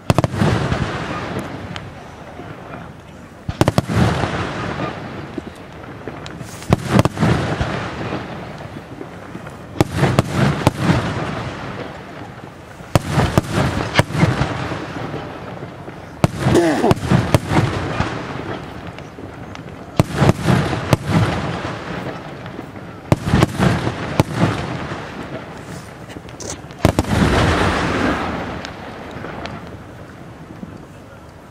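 Aerial fireworks shells bursting in a display: a loud bang about every three seconds, each followed by a fading rumble and crackle.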